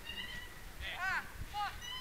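Metal swing hangers squeaking as several people swing: overlapping high squeals, some held at a steady pitch, with two squeals that rise and fall about a second in and another shortly after.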